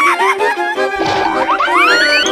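Playful comic background music with a cartoon 'boing'-type sound effect: a noisy hit about a second in, then several rising glides in pitch over the music in the second half.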